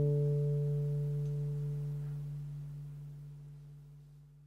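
A final plucked guitar chord ringing on and slowly fading away, closing the music.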